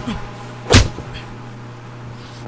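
A single loud thump about three quarters of a second in, over a steady low hum.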